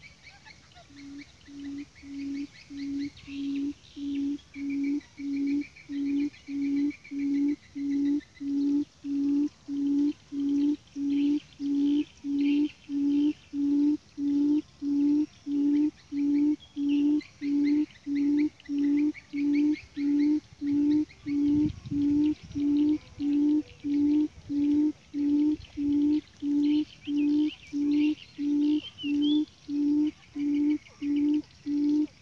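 A wild quail's call, a long, even series of low hoots at about one and a half a second, as buttonquail give. It swells over the first several seconds, then holds steady, with fainter high chirping of insects or small birds behind it.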